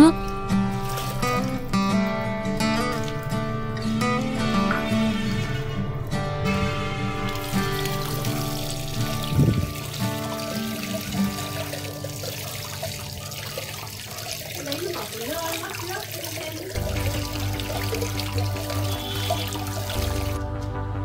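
Background music over water trickling and splashing as soaked grains are rinsed in a plastic strainer basket dipped into a basin of water.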